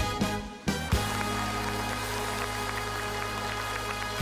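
Live band closing a trot song: a few sharp accented hits, then a final chord held for about three seconds. Scattered audience clapping begins under the held chord.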